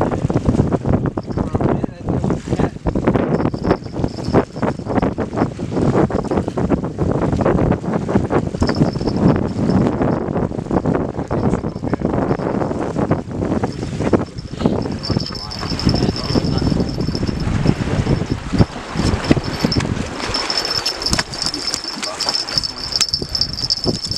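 Wind buffeting the microphone, with indistinct talk from the people close by. A thin, steady, high-pitched tone comes and goes, then holds through the last part.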